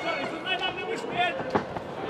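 Short shouts from voices in the arena over a steady background of crowd noise, with one sharp thump about one and a half seconds in.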